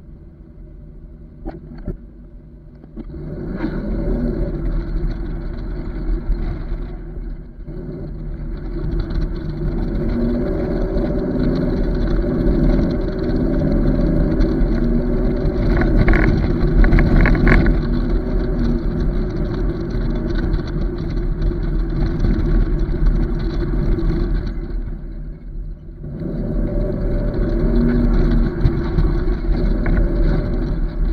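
A truck towing an empty flatbed trailer pulls away about three seconds in and drives on, with engine, tyre and wind noise building to a steady run. The sound eases off briefly twice and picks up again each time.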